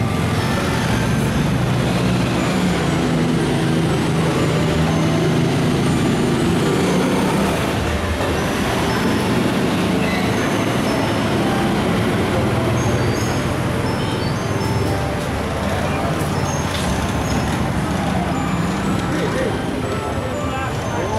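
Street traffic: small motorcycle and motorized three-wheeler engines running as they pass, over a steady din of voices and traffic.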